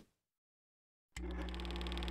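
Dead silence for about a second, then an open microphone's room tone comes in: a low, steady hum under faint hiss.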